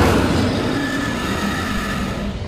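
Tyrannosaurus rex roar sound effect: one long, harsh roar that is loudest at the very start and holds steady.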